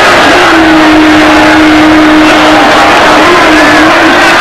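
Loud, steady roar of a large football stadium crowd, with one held tone standing out above it for about two seconds.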